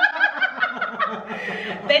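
Two people, a woman and a man, laughing together in quick repeated pulses that tail off about a second and a half in.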